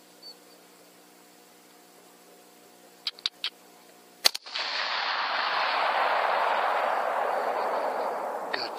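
A single AK-47 rifle shot about four seconds in, preceded by a few quick sharp clicks over a faint steady hum and followed by a loud rushing hiss that slowly fades.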